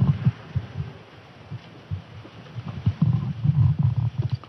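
Irregular low thumps and rumbling, heaviest near the end.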